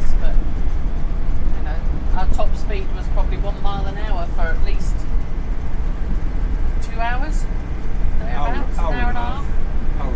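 Steady low road and engine rumble inside a motorhome cab while driving, with voices talking over it at times.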